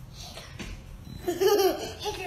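A child laughing loudly in high-pitched peals that break out a little after a second in, following a quieter stretch.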